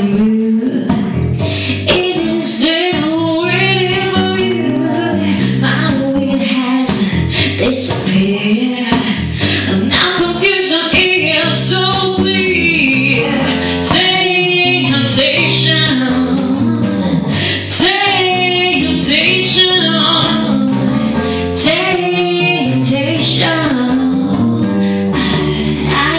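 A female voice singing a slow jazz melody over a plucked bass line, a duo of just voice and bass.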